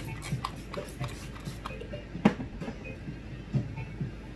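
A few quick spritzes of a trigger spray bottle of water sprayed into hair, then hand-handling noises with one sharp knock a little over two seconds in.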